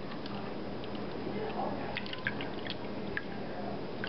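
Water being poured into a clear plastic cup, a faint pouring and splashing with a few small drips as the cup fills.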